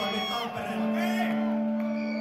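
Live band on stage: a held high note dies away about half a second in, then a steady low instrument note sounds on.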